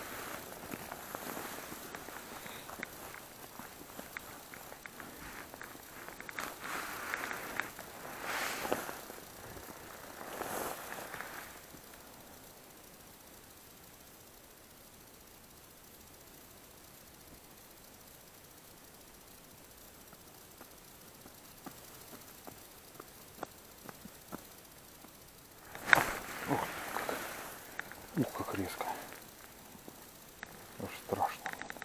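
Rustling and handling noise in an ice-fishing tent as an ice rod is jigged: irregular rustles and clicks at the start, a quieter stretch in the middle, and a louder burst of rustling and sharp clicks near the end.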